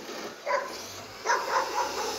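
Garbage truck running with a low steady hum, under four short, sharp pitched calls: one about half a second in and three in quick succession in the second half.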